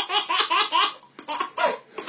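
A person laughing in several short bursts.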